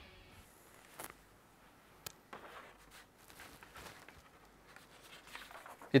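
Near silence: a faint background hiss with a few soft, sharp clicks, after a music bumper fades out at the very start.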